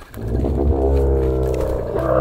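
Dromedary camel giving one long, low, steady-pitched groan.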